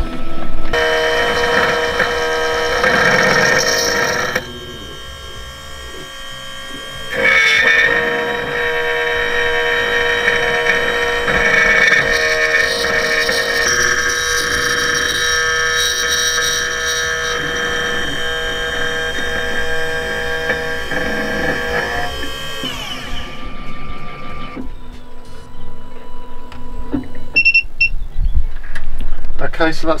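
Computerised key-cutting machine milling an HU49 key blank: a steady whine with several high pitches. It drops away for a couple of seconds about four seconds in, comes back, and fades out a little over twenty seconds in, leaving quieter irregular sounds.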